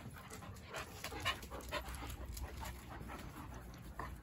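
A dog panting quickly and faintly, at about four breaths a second, from the exertion of play.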